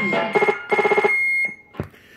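Electronic beep tones from a CB radio caller box, played through the radio's speaker: a fast warbling run of beeps, about eight a second, with a high steady tone held over it that stops a little after halfway. This closes the box's custom voice intro. A single sharp click follows near the end.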